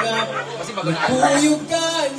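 A voice, with chatter around it, over live music played by a seated performer and amplified through a PA speaker; sustained low notes run under the voice.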